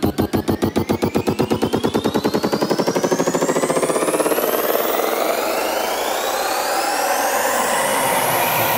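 Electronic dance music build-up: a drum roll speeds up until it blurs into a continuous buzz, while rising synth sweeps climb and the bass thins out.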